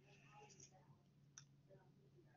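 Near silence, with one faint click a little past halfway through: a computer mouse click.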